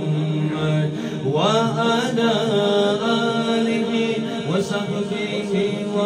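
A man singing an Urdu devotional kalam (naat) into a microphone without instruments, drawing out long melismatic notes that slide up and bend in pitch over a steady drone.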